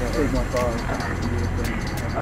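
A man's voice, murmured or half-sung without clear words, over the steady low rumble of a car cabin.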